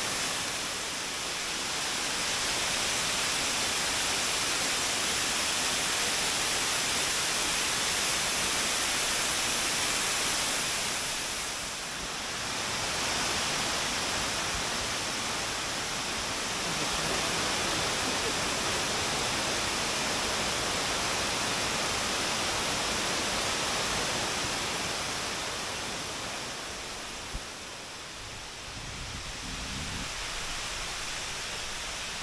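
Steady rush of Machine Falls, a waterfall running heavy with storm water. It eases off somewhat near the end, where there is a single short click.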